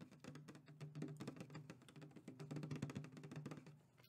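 Fingernails tapping and scratching rapidly on a plastic 2-liter soda bottle held close to the microphone: a dense run of small clicks over an on-and-off low hum.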